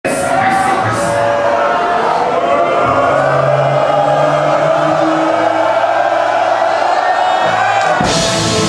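Live ska-rock band playing a song intro: held, sustained notes over a cheering crowd, with three quick high ticks in the first second.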